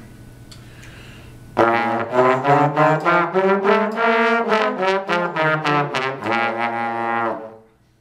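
Two trombones playing a fast B-flat concert scale together, quick separate notes stepping up about an octave and back down. The scale starts about a second and a half in and stops shortly before the end.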